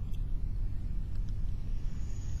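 Steady low rumble with no speech, a constant background drone of the recording.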